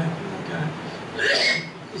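A single short cough from a man, about a second and a half in, in a pause between his sentences.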